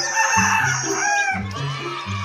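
A rooster crowing once: one long call that ends with a drop in pitch about one and a half seconds in, over background music with a steady beat.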